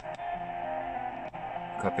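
Guitar music from an AM broadcast station playing through the small built-in speaker of an XHDATA D-368 radio, sounding dull with no treble. A man's voice comes in near the end.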